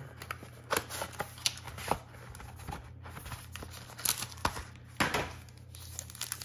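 A trading-card hobby box and a foil card pack being handled and opened: scattered sharp crinkles and tearing at irregular moments. A steady low hum runs underneath.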